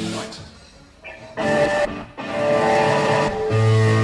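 Live blues-rock power trio playing electric guitar and bass: a held chord dies away into a brief lull, short guitar stabs follow, and then sustained chords ring out, with a deep bass note coming in near the end.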